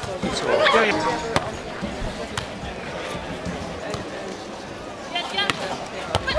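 A beach volleyball being struck during a rally: a few sharp slaps of hands and forearms on the ball, a second or more apart, with short voices in between.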